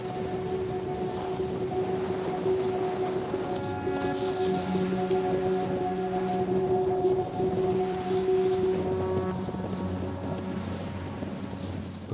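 Background music of long held chords, with a low note and some higher notes joining about four to five seconds in, over a steady rush of wind and sea.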